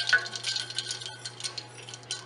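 Tea with ice cubes being stirred vigorously with a spoon in a stainless steel pan, ice and spoon clinking and rattling against the pan, the clinks thinning out toward the end.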